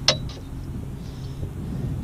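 A single sharp clink just after the start, with a fainter tap right after it, as the landing net's metal hoop knocks against the boat while a smallmouth bass is lifted aboard. A steady low rumble runs underneath.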